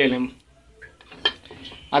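A few light clicks and scrapes of a metal spoon against a stainless steel bowl holding a piece of chocolate.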